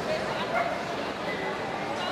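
A dog giving a few short barks over the steady chatter of a crowd in a large hall.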